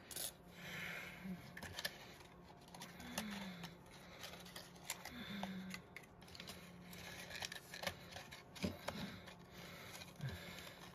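Faint rustling and scattered light ticks of satin ribbon being handled and pulled out to a longer length.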